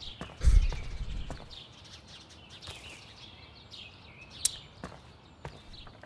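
Footsteps and small knocks on a doorstep, with a heavy low thump about half a second in and a sharp click a little past the middle, over a quiet background.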